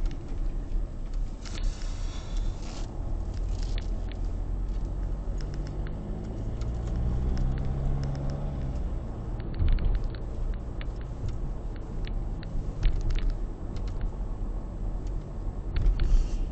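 Car cabin noise while driving: a steady low rumble of engine and tyres, with the engine note rising for a few seconds around the middle as the car picks up speed. Scattered light clicks over the second half.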